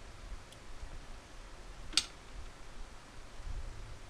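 A single sharp click about halfway through as multimeter test probes are repositioned on a capacitor's leads on an electronics circuit board, over a low handling rumble.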